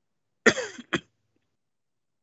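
A man coughs twice: a longer cough about half a second in, then a short second one.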